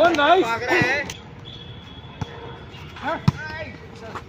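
Volleyball being hit by players' hands and arms: a few sharp slaps about a second apart, the loudest just after three seconds in, among players' shouts.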